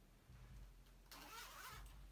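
Near silence: faint low room hum, with a brief faint rustle-like noise about a second in.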